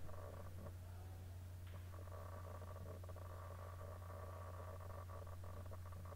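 Faint room tone: a steady low hum with a few faint ticks.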